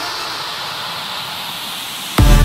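Filtered white-noise sweep in an electronic dubstep track, falling slowly in pitch: a transition effect between the track's heavy bass hits.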